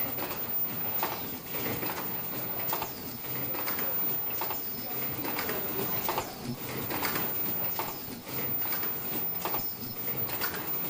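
Fully automatic flat face mask production line running: a steady machine hum with short repeated knocks, roughly two a second, from the mask body machine's cycling stations.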